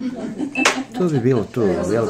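People talking, with a single sharp clink of glass or tableware, ringing briefly, about two-thirds of a second in.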